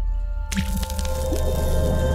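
Intro sting of music and sound effects: a low rumble swells, then about half a second in a sudden splashy, liquid-sounding hit lands, with steady ringing tones held under it.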